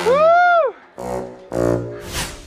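Comic sound effects over the programme's music: a loud pitched tone that slides up and back down, then two short low notes.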